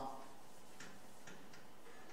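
Chalk on a blackboard: a few faint short ticks of chalk tapping and stroking the slate in quick succession, over quiet lecture-hall room tone.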